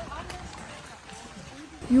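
Faint voices and the footsteps of people walking on a paved path outdoors, at a low level.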